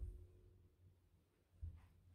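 Near silence in a small room. The low thud of a jump landing on a rug fades in the first moment, and a single soft footstep thud follows about one and a half seconds in.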